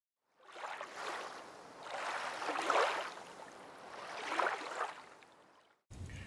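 Water washing in three slow surges, each building and fading over a second or so, then dying away just before the picture cuts.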